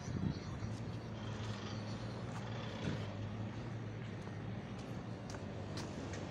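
Steady low hum of street traffic, a running engine's drone holding one pitch, with a few faint clicks.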